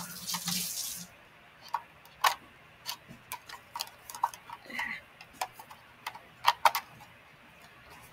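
Brief scraping rustle in the first second, then scattered light plastic clicks and taps as a printed film card is pushed into the film slot of a LEGO brick camera; the card is catching rather than sliding straight in.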